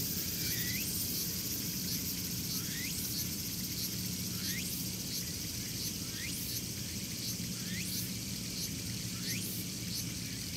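Insects buzzing steadily at a high pitch, with a short rising chirp repeating about every one and a half seconds, over a low steady hum.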